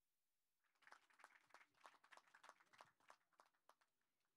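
Faint, brief hand clapping from a few people: a scatter of irregular sharp claps that starts under a second in and dies away near the end.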